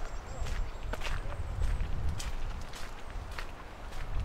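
Footsteps of a person walking at an even pace on a gravel footpath, about two crunching steps a second, over a steady low rumble.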